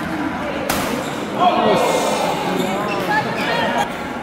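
A sharp racket-on-shuttlecock hit in a badminton rally about two-thirds of a second in. Loud shouting voices follow from about a second and a half in, echoing in the sports hall as the point is won.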